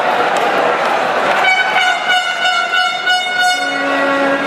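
Stadium crowd noise with a fan's horn blown in the stands: one long steady note from about a second and a half in, with a second, lower note joining near the end.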